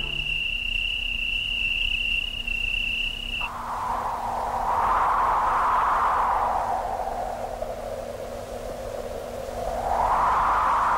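A thin, steady high tone that cuts off suddenly about three and a half seconds in. It gives way to a band of hiss that swells, slowly rises and then falls in pitch, and climbs again near the end.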